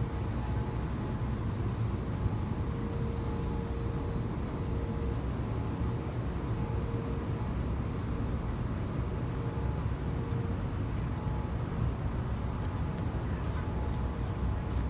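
Steady traffic noise from cars on a busy multi-lane city street, an even rumble with no single vehicle standing out.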